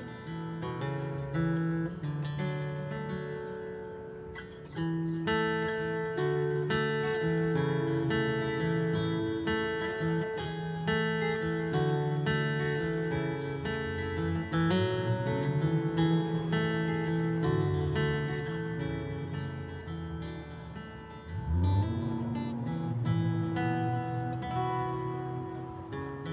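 Solo acoustic guitar with a capo, playing an instrumental passage of ringing, overlapping chord notes.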